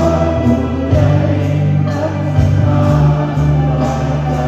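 A group of teachers singing a Thai farewell song together over amplified musical accompaniment, with a sustained bass line that changes note about once a second.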